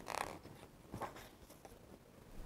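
A picture book's paper page being turned by hand: a faint rustle and swish at the start, with a light tap about a second in.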